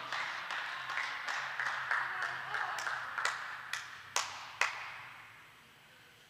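A few people clapping in a large reverberant indoor hall, the claps irregular at first and thinning out to two last single claps about four and a half seconds in.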